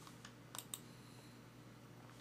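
Near silence with a faint low hum and four short, faint computer clicks in the first second or so.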